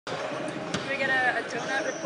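A man's voice talking indistinctly close to a microphone, with a single sharp knock a little under a second in.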